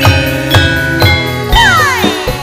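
Live band music mixing gamelan and drums: ringing metal-bar notes over low hand-drum strokes, with a falling pitch glide about one and a half seconds in.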